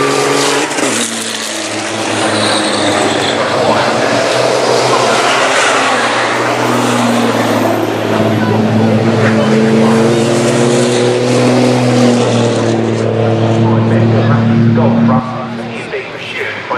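A pack of racing trucks' diesel engines running hard as they pass, a loud deep drone of several engine notes that rise and fall together. The sound drops away sharply near the end as the trucks move on.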